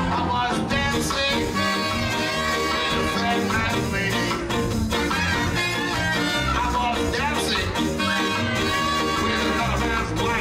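A live ska band playing an upbeat tune: horn section with trumpet and saxophone, electric guitar, bass guitar, keyboard and drum kit, all at a steady loudness.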